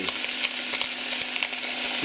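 Raw chicken pieces sizzling in hot cooking oil in a stainless steel pot as they start to brown: a steady hiss with scattered crackles.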